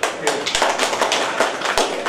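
A small group of people clapping briefly, the claps distinct and uneven rather than a dense roar. Two sharper low knocks come about half a second in and near the end.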